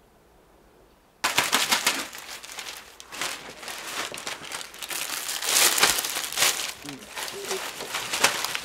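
Thin clear plastic salad bag crinkling as it is handled and opened, starting suddenly about a second in after near silence and carrying on as a dense crackle.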